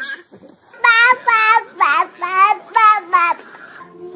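A young child's high-pitched voice singing or squealing a quick run of short notes, each one bending in pitch.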